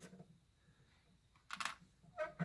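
Mostly quiet, with faint small clicks as needle-nose pliers and a small metal retaining pin are handled. A brief, short noise comes about one and a half seconds in.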